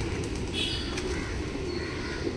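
A flock of feral rock pigeons cooing together in a steady low murmur, with a few short high chirps over it.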